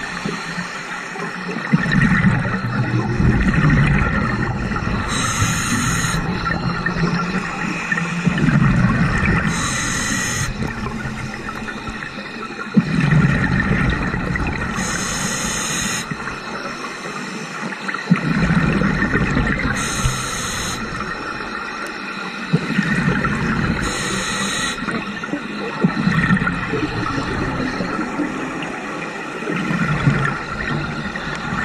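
Scuba diver breathing through a regulator underwater. Each breath is a short hiss on the inhale, then a low, rumbling rush of exhaust bubbles on the exhale, repeating about every five seconds, some six breaths in all.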